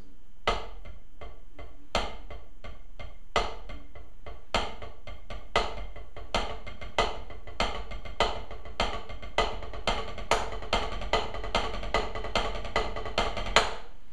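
Wooden drumsticks playing paradiddles on a practice pad, with the first stroke of each right and left group accented so a louder tap stands out every four strokes. The tempo starts slow and speeds up steadily.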